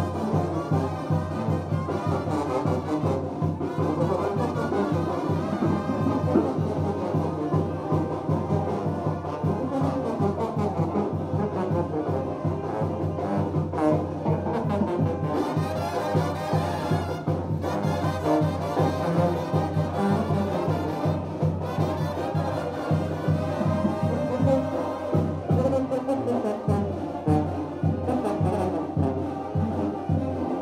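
Brass band with a sousaphone bass playing a lively dance tune live, with a steady beat.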